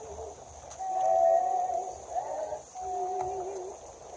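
A slow hymn during communion: long, slightly wavering sung notes, sometimes in two parts at once, over a steady high hiss.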